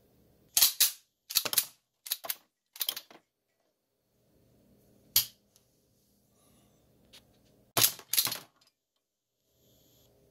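Sig P210A pistol's steel slide racked by hand several times, cycling snap caps through a modified magazine. Sharp metal clacks come in quick pairs, four pairs in the first three seconds, then a single clack about five seconds in and three close together near eight seconds.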